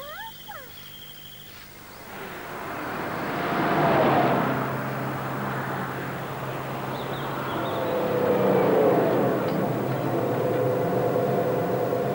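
Cartoon sound effect of a car approaching, its engine and road noise growing louder to a peak about four seconds in, then running on steadily as it draws up.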